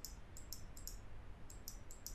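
Computer mouse clicking rapidly and irregularly, several short, sharp clicks a second, over a faint low hum.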